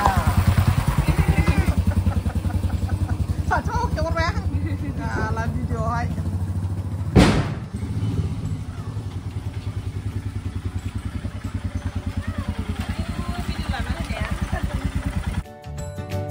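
Motorcycle engine idling with a steady, rapid low pulse. A single sharp bang comes about seven seconds in, and a few short voices are heard near the start.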